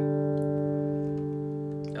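Steel-string acoustic guitar in drop D tuning letting a G chord ring out, the strings dying away slowly.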